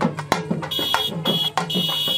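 Fast, steady processional drumming, with three short, shrill whistle blasts in the second half, each held on one pitch.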